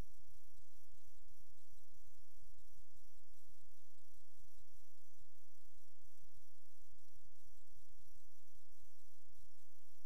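Steady electrical hum and hiss picked up by a sewer inspection camera's recording system, with a constant low hum and faint high whines and no distinct events.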